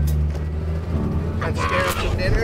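Music with a deep, steady bass note that fades in the first half. Then an open-top vehicle drives along, and people's voices rise loudly near the end.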